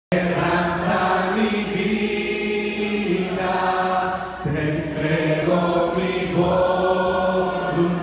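A congregation singing a slow Spanish-language worship chorus together with a worship leader, in long, held phrases.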